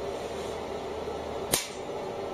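Over-and-under shotgun dry-fired: a single sharp click of the hammer falling about one and a half seconds in, with a brief ringing tail. A faint low hum stops at the click.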